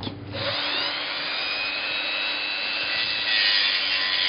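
Small handheld electric rotary tool starting up, its whine rising for a moment and then running steadily. From about three seconds in it grinds more harshly as it cuts into the bone of a horse mandible to take off a fragment.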